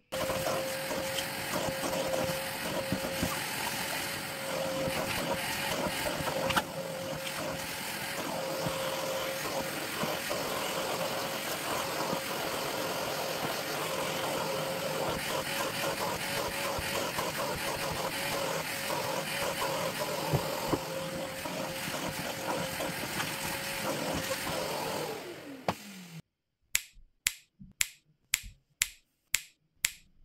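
Vacuum cleaner running steadily, with a constant hum, as its nozzle vacuums a black fabric storage box. About 25 seconds in it is switched off and the motor winds down in falling pitch. A handful of sharp clicks follow near the end.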